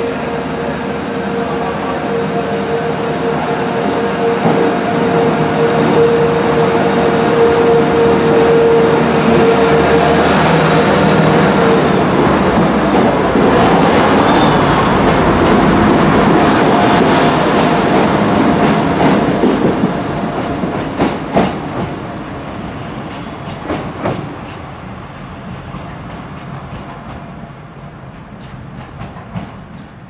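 Class 175 diesel multiple unit running in along the platform: a steady whine that stops about eleven or twelve seconds in, a louder rumble as the carriages pass close by, then a fade as it moves away, with wheels clicking over rail joints in the last ten seconds.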